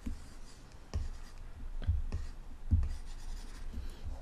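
Stylus tapping and stroking on an iPad's glass screen while drawing edge loops: about five irregular taps, each with a dull low thud.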